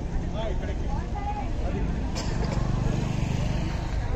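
Busy outdoor market ambience: scattered voices of people talking in the background over a steady low rumble. A sharp click comes a little after two seconds, followed by a low steady hum for about a second and a half.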